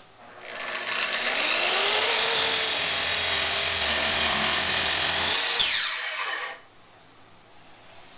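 Kreg plunge track saw starting up and cutting along the edge of a wood-and-epoxy river table slab, running steadily under load for about six seconds, then stopping abruptly.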